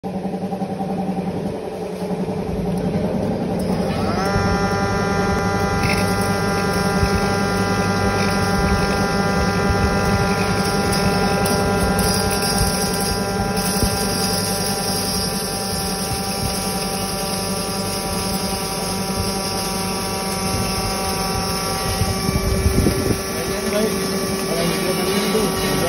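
Domestic multipurpose flour mill (aata chakki) switched on about four seconds in: its electric motor spins up with a short rising whine and then runs steadily with a high, even whine over a lower hum.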